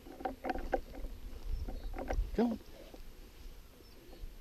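A run of short rustles and knocks over a low rumble, from movement and wind on a body-worn camera in grass, with a man calling 'come on' about two and a half seconds in.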